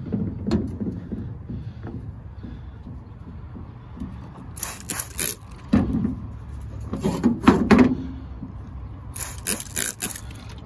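Heavy wet stones being handled and set down on a hard surface: a few clusters of sharp knocks and scrapes, about five seconds in and again near the end, over a low steady rumble.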